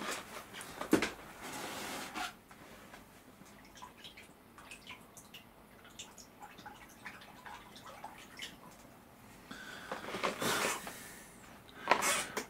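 Faint water sounds of a small freshly copper-plated figure being rinsed: a short rush of water about a second in, scattered small drips and ticks, then another rush of water near the end.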